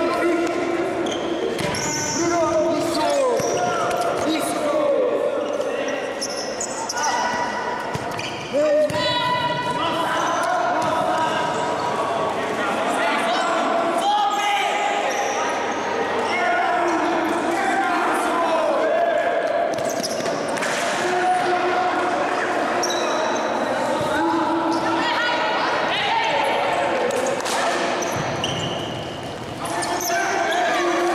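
Futsal play echoing in a sports hall: the ball being kicked and bouncing on the wooden court amid players' and spectators' shouts, with one loud sharp impact about nine seconds in.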